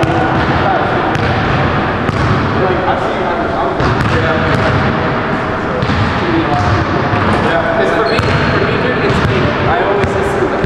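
A basketball bouncing on a hardwood gym floor, with indistinct voices in the background.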